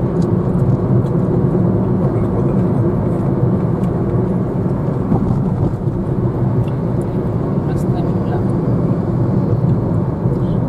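Steady rumble of a car's engine and tyres on the road, heard from inside the cabin while driving.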